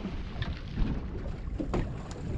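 Wind rumbling on the microphone aboard a small boat on open sea, with a faint knock about three-quarters of the way through.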